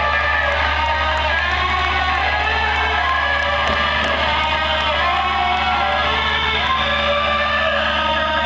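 Electric guitar amplifiers ringing on with a steady, sustained drone of held feedback tones, over a low amp hum, while the crowd cheers and whoops.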